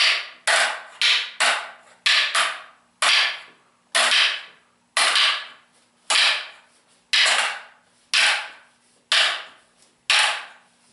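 Hard wooden clacks of training sticks striking each other in partner drills: quick pairs of strikes in the first couple of seconds, then single strikes about once a second, each with a short echo.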